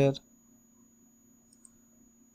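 Near silence with two faint, quick computer mouse clicks about one and a half seconds in.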